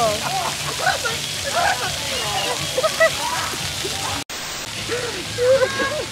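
Splash-pad fountain jets spraying water with a steady hiss, under scattered voices; the sound cuts out for an instant about four seconds in.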